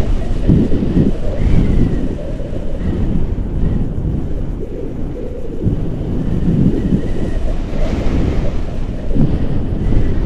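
Airflow buffeting the camera's microphone during a tandem paraglider flight: a loud, gusty low rumble that swells and eases every second or so.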